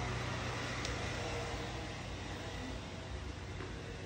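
Two small electric circulator fans running together off a portable power station, a steady rush of air that grows slightly fainter.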